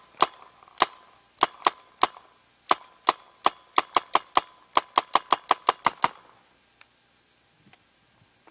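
Compressed-air paintball gun firing herbicide gel-cap rounds: about twenty sharp shots, spaced out at first and then quickening to about four a second, stopping about six seconds in.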